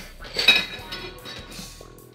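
A glass mixing bowl clinks once, about half a second in, with a short ring, as egg-coated green beans are tossed in it by hand. Faint soft rustling of the wet beans follows.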